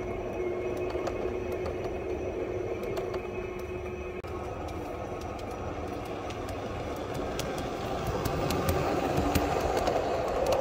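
Model railway trains running along the track past a station platform. The hum of the first passing train fades after a few seconds. Near the end a second train approaches and passes louder, with a quick run of clicks from its wheels.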